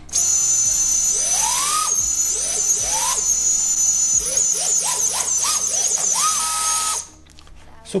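Brushless motors of an iFlight ProTek25 FPV cinewhoop spinning with no propellers fitted, under throttle from the radio: a steady high whine with repeated quick rises and falls in pitch as the throttle is blipped, then cutting off suddenly near the end. The motors answering the sticks show the new Crossfire receiver link working.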